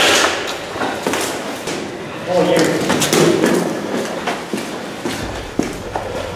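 Indistinct voices talking, with a sharp knock right at the start and a few scattered knocks and handling noises.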